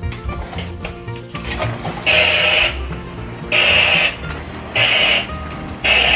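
Lionel MPC-era electronic "sound of steam" chuffing from a running toy steam locomotive: hissing chuffs about every second and a quarter, starting about two seconds in, over background guitar music.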